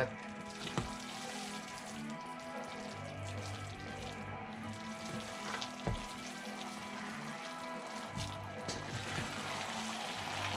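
Soft background music with steady held notes over the faint sizzle of thick black sticky rice in coconut-sugar syrup being stirred in a wok with wooden spoons; a spoon knocks against the pan once or twice.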